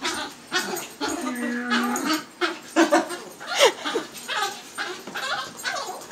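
Puppy yipping and whining, many short high calls in quick succession.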